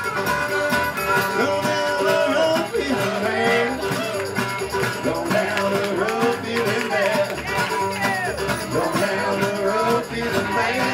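Live acoustic string band playing a tune: fiddle, acoustic guitar and upright bass, with harmonica carrying bending, wavering lead notes over a steady rhythm.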